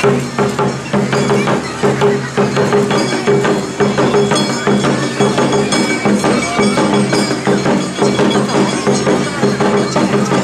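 Live Awa odori accompaniment music: a fast, dense beat of drums and percussion over sustained low-pitched tones, playing without a break.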